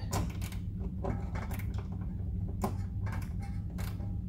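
An 8 mm socket tool turning a screw loose from the plastic wheel-well liner, giving a dozen or so short, irregular clicks over a steady low hum.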